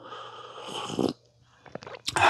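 A man slurping a sip of coffee from a mug, one noisy sip lasting about a second, followed by a couple of faint clicks near the end.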